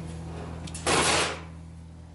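A number 10 cast-iron Dutch oven being flipped upside down with a plate and set down on a steel table: a couple of light clicks, then one short clatter about a second in, lasting under half a second.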